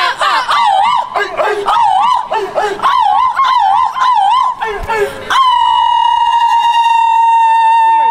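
A high singing voice with a fast wavering pitch, then one long held note from about five seconds in.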